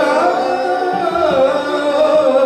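Male Hindustani classical vocalist singing a sustained, ornamented melodic line whose pitch glides and wavers, over a steady tanpura drone.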